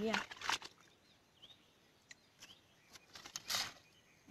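A folding mesh fish trap landing in shallow pond water with a short splash about three and a half seconds in. Faint bird chirps come before it.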